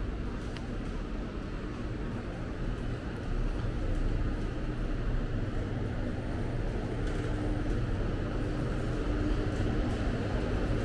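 Steady low hum and rumble of an indoor shopping-centre corridor's ventilation, growing slightly louder a few seconds in, with a faint steady tone over it.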